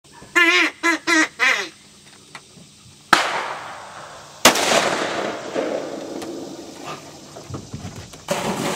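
A duck call blown in four short quacks, the last one dropping in pitch, followed by two shotgun shots about a second and a half apart, each leaving a long echoing tail.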